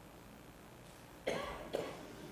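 A person coughing twice in quick succession a little over a second in, after a stretch of quiet room tone.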